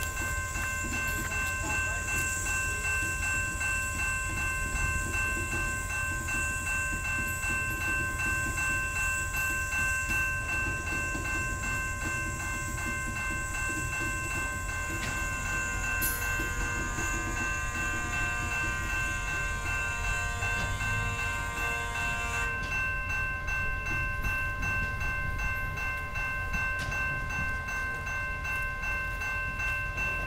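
A grade-crossing bell rings steadily while a slow freight train carrying a loaded Schnabel heavy-load car rolls past with a low rumble from its wheels. About halfway through, a wavering metallic squeal from the wheels joins in for several seconds.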